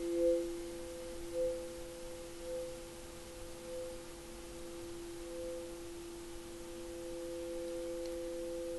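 Two pure tones held together, a lower one and a higher one, the higher swelling and fading about once a second: sound-healing tones made to help the listener attune.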